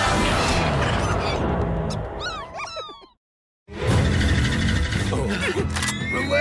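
Cartoon soundtrack of loud music and action effects. About two seconds in comes a run of quick falling squeaks, then the sound cuts out completely for about half a second before the music and effects come back.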